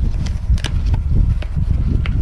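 Wind buffeting the microphone in a loud low rumble, with a few light knocks and rustles from a cardboard box being handled and slid into a padded gear backpack.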